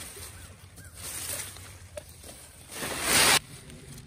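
A leaf rake scraping through dry fallen leaves, the leaves rustling, with one louder, brief rustle about three seconds in.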